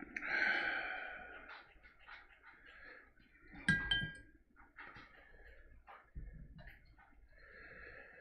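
A long, audible breath out over the first second or so, followed just before the midpoint by a sharp clink that rings briefly, with small clicks and rustles of handling between.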